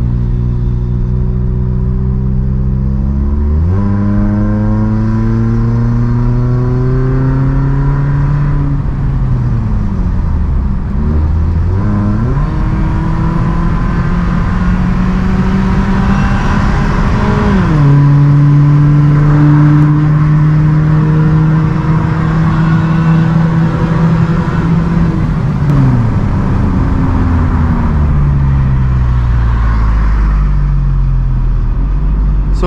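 2011 Toyota Corolla GLI 1.6's four-cylinder engine, heard from inside the cabin through an aftermarket electronic valved exhaust with the valve opened, accelerating hard. The revs jump and climb from about four seconds in, dip around ten seconds, and climb again. They drop suddenly at an upshift about eighteen seconds in, hold a steady loud drone, and fall away near the end.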